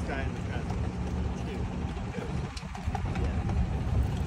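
A parked fire engine's engine idling with a steady low rumble, while people talk in the background.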